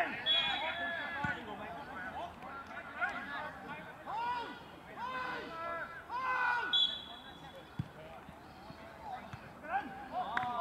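Footballers shouting to one another across an outdoor pitch, with a couple of thuds of the ball being kicked.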